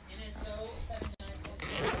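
Zipper on a golf cart bag's pocket being pulled open, a rasping run that grows loudest near the end, with the bag's fabric rustling under the hand.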